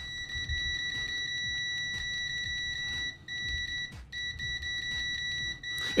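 PEAKMETER PM18C digital multimeter's continuity beeper sounding a steady high-pitched tone while the probe tips are held together, signalling a closed circuit. It drops out twice briefly a little after the middle and stops just before the end as the probes part.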